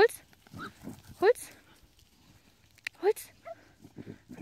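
Border collie giving three short, sharp barks that rise in pitch, at pigs it is herding, with softer pig grunting between the barks.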